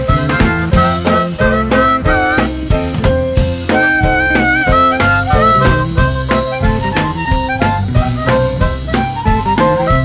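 Blues harmonica playing an instrumental solo, with bent, wavering held notes, over a blues band of guitars, bass and drums keeping a steady beat.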